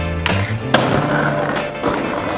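Skateboard on pavement: wheels rolling with a sharp board strike about a quarter-second in and a louder crack about three-quarters of a second in, over a song.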